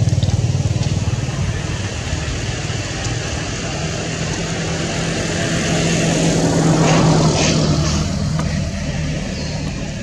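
A motor vehicle engine running, growing louder to a peak about seven seconds in and then fading away.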